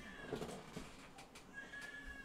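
A cat meowing faintly: one drawn-out call starting about halfway through that sags slightly in pitch, with a few faint knocks of movement.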